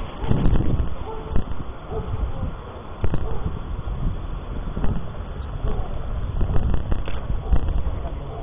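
Wind buffeting a handheld camcorder's microphone in uneven gusts, with a faint murmur of people's voices.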